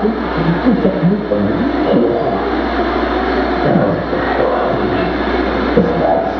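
Loud, dense electronic noise from a live experimental noise set: a thick wash of hiss with a steady low drone underneath and many short, warbling fragments bending in pitch throughout.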